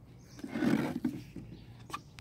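A person's short breathy vocal sound, a grunt-like exhale without words, about half a second in, followed by a single small click near the end.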